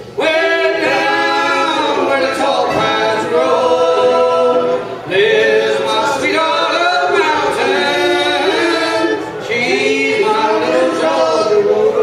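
Several men of a bluegrass band singing in harmony without instruments, in sung phrases with short breaks about five and nine and a half seconds in.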